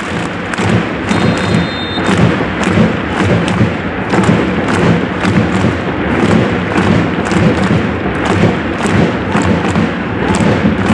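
Supporters' drums beating a steady rhythm in a packed football stadium, over the constant noise of the crowd.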